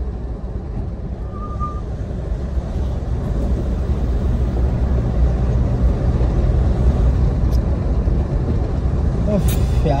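Steady low wind rumble on the microphone with engine and road noise from a moving motorcycle, growing louder from about three seconds in.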